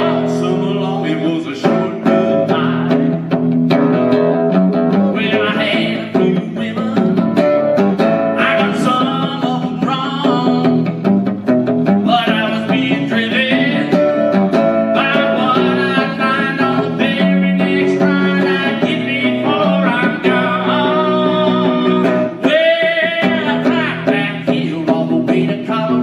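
Live solo performance of a country song: a man singing while playing an archtop guitar.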